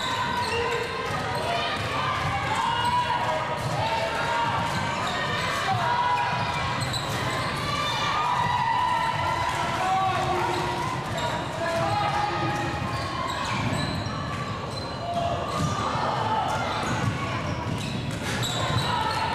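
A basketball being dribbled and bounced on a gym's hardwood floor during a game, under a steady babble of many overlapping voices from players and spectators in the hall.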